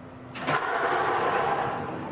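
Numbered lottery balls released all at once into four clear plastic ball machines, clattering together as they fall and tumble. The clatter starts suddenly about a third of a second in and slowly dies away.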